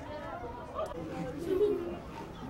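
Indistinct chatter of several people talking at once, with one voice louder about one and a half seconds in.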